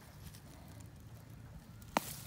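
Faint rustling and light knocks as a hand grips a common milkweed sprout at its base and pulls it up, ending in one sharp snap just before the end as the shoot breaks away, leaving its taproot in the soil.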